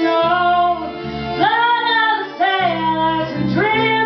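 A woman singing a song in held, sliding notes, with plucked acoustic guitar accompaniment.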